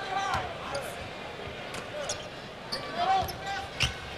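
Basketball being dribbled on a hardwood court, giving a few sharp bounces, with indistinct voices in the arena.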